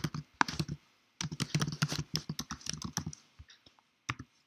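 Typing on a computer keyboard in quick runs of keystrokes: a short burst, a brief pause, then a longer run of about two seconds that thins out to a few clicks near the end.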